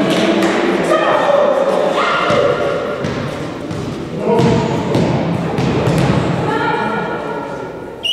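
Volleyball players' voices calling out, echoing in a sports hall, with repeated thuds on the court floor.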